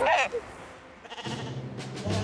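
A sheep bleating once, a short wavering call at the very start.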